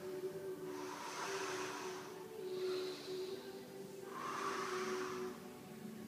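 A man's breathing, three long breaths in and out, over faint steady background music.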